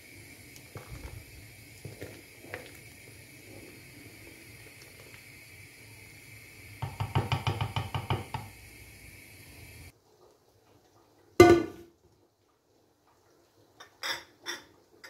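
Pot of plums in sugar syrup simmering on a gas hob: a steady hiss with light knocks from a wooden spoon stirring, and a run of quick popping for about a second and a half past the middle. The sound then cuts off, and a single sharp knock comes near the end.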